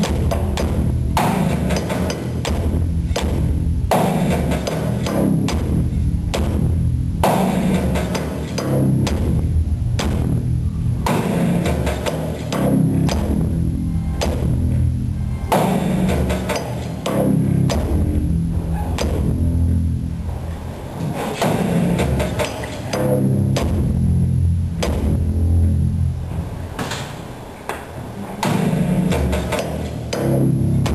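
A Magic Pipe, a homemade steel-pipe instrument with a bass string, played live in an instrumental groove: deep bass notes under regular sharp percussive strikes from a drumstick on the pipe.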